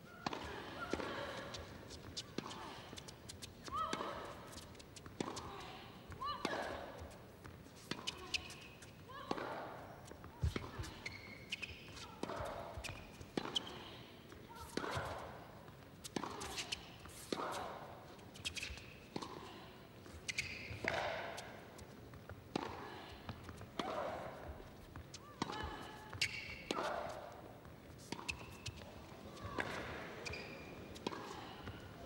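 A long tennis rally: a ball struck back and forth with rackets on an indoor hard court, a hit about every second and a bit, echoing in a large arena.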